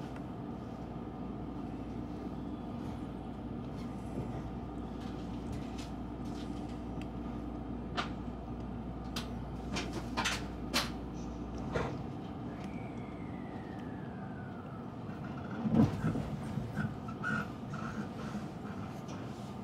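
An electric train humming at a platform. Its doors close with a series of clicks and knocks about eight to twelve seconds in. Then a tone slides downward and a loud clunk comes about sixteen seconds in as the train starts to move off.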